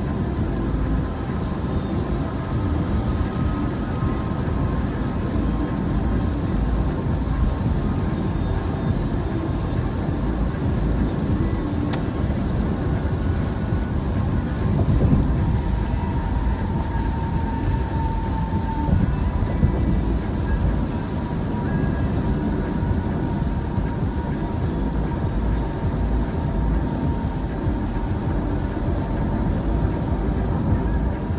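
Steady road and tyre noise heard inside a car's cabin at freeway speed on a wet road, a continuous low rumble with faint steady tones over it.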